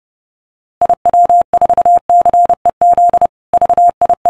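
Morse code sent as a steady mid-pitched beep tone, keyed in short and long elements with gaps between letters, starting a little under a second in.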